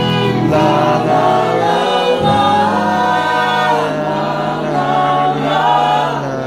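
Live acoustic country band: several voices singing long held notes in harmony, backed by strummed acoustic guitars and a bowed fiddle.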